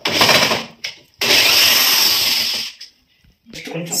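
Handheld electric drill running in two bursts against a wooden wardrobe panel, a short one and then a longer one of about a second and a half.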